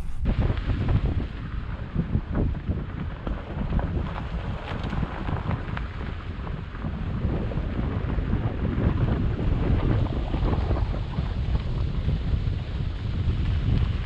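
Wind buffeting the microphone of a camera held out of a moving car's window, a heavy, gusting low rumble.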